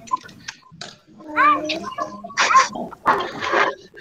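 Children's voices and vocal noises mixed over a video call. Short pitched, bending sounds come near the middle, then two short bursts of hissy noise in the second half.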